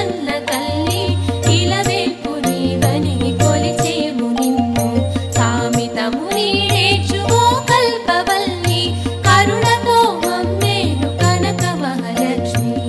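Indian devotional music of a Lakshmi song: an ornamented, wavering melody over held steady tones and a repeating low bass pattern.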